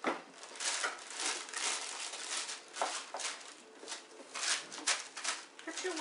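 Sheet of wax paper crinkling and rustling in irregular crackles as it is pressed and creased into a cake pan to line it.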